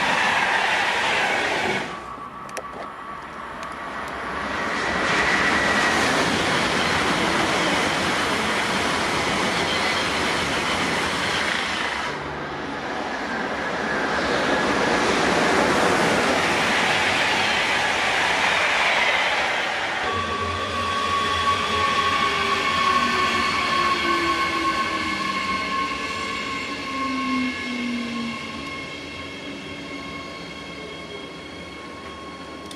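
Passenger trains rolling through a station one after another, with wheel-on-rail rumble and clatter; the sound changes abruptly at each cut between trains. The first is a locomotive-hauled rake of coaches. In the last third, steady whining tones ring over the rumble, one of them sliding down in pitch.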